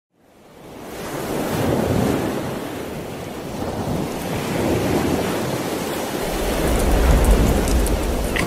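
Ocean surf breaking on rocks, fading in from silence and swelling and ebbing, with a deep low rumble building over the last two seconds.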